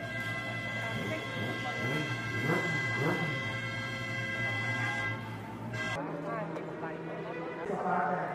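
Honda superbike engine held at a steady fast idle while being warmed up on its stand, a steady droning note with voices over it. About six seconds in the drone cuts off abruptly and a lower hum with chatter takes over.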